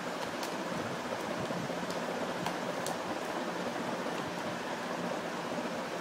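Steady background hiss with a few faint clicks as a boxed plastic toy phone in its packaging is handled.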